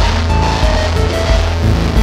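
Electronic music played live on hardware synthesizers, drum machines and samplers through a mixer, with a heavy bass line under sustained higher tones.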